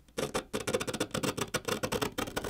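Flat metal pry tool scraping and prying through sticky adhesive inside a smartphone's metal frame: a rapid, irregular crackle of small clicks and scrapes.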